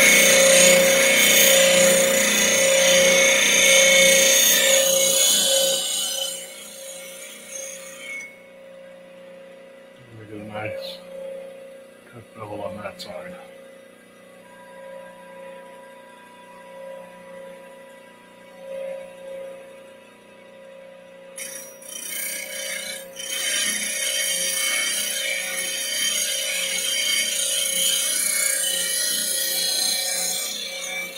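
Bench grinder running, with a steel gouge pressed to the wheel to grind a 40/40 grind: a loud rasping hiss over the motor's steady hum. The grinding stops about six seconds in, leaving the motor humming alone, and starts again a little past twenty seconds in as the wing is ground.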